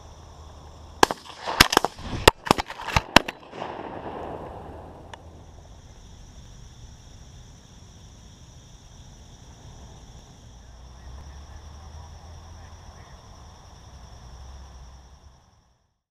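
A rapid volley of about eight shotgun shots within about two seconds, starting a second in. After it comes steady chirring of field insects, which fades out near the end.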